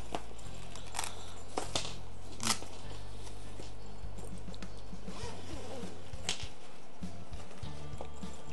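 Zipper on a fabric carrying case being pulled open, heard as a few short rasps and clicks, with handling of the case. Underneath is soft background music with a low bass line that changes note every second or so.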